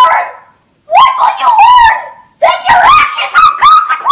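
High-pitched wavering vocal cries that slide up and down in pitch, coming in three bouts with short breaks between them.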